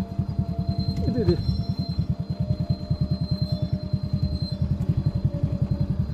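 Motorcycle engine running at low speed, a rapid, even low putter of roughly a dozen beats a second.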